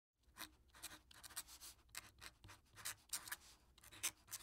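Faint scratching of a pen on paper: a quick, irregular series of writing strokes, the sound effect for a signature logo being drawn.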